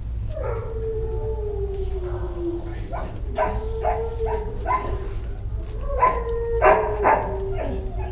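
A dog howling: long drawn-out howls that sag slowly in pitch, with a run of short barks mixed in around the middle and near the end, the barks the loudest part.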